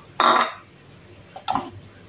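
Metal kitchenware being handled: a loud brief clatter just after the start, then a smaller clink with a short high ring about a second and a half in.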